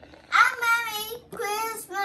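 A young girl singing into a toy karaoke microphone: a few short sung phrases with gliding pitch.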